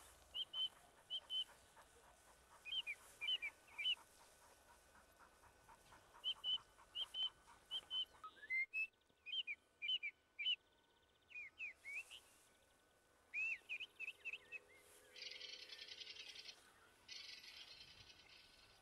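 A bird calling over and over in short, curved chirps, in groups of two to four. Near the end two bursts of hissing noise, each about a second and a half long, cover the calls.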